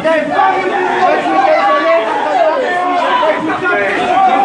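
A packed crowd of people talking over one another, many voices at once, in a metro station.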